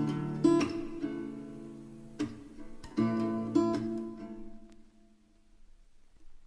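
Acoustic guitar strumming a few final chords, each left to ring. The last chord fades away to near silence about five seconds in as the song ends.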